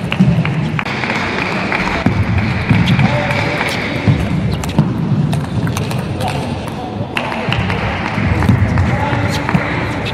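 Table tennis ball clicking sharply off the bats and the table in irregular exchanges during rallies, over a steady murmur of voices in the hall.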